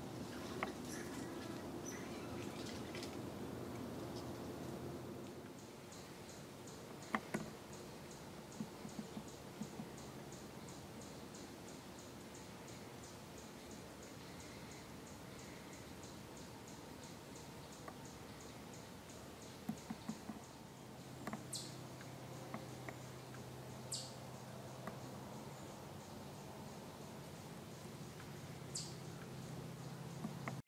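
Quiet woodland ambience: a faint steady hiss with scattered sharp ticks and snaps, a run of faint rapid high ticking at about four a second through the middle, and a low hum coming in about two-thirds of the way through.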